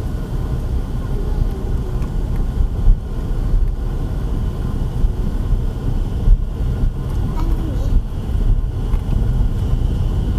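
Car interior noise while driving slowly on a rough dirt track: a steady low rumble of engine and tyres, with a couple of sharper knocks from the bumpy road surface.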